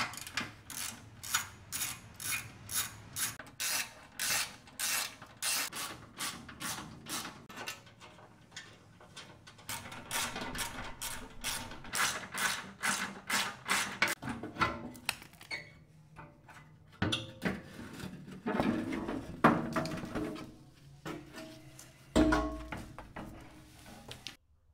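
Hand socket ratchet clicking as bolts on a truck's underbody skid plate are worked loose: a long run of sharp clicks, about three a second, followed near the end by a few heavier metal knocks.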